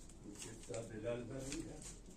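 Faint, soft cooing of a pigeon, a few low notes in a row.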